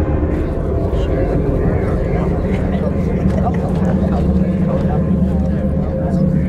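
A low, steady rumble with a held tone above it, under faint, indistinct voices.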